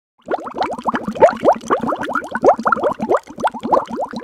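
Bubbling-water sound effect: a dense, rapid run of short rising blips like bubbles, starting a moment in.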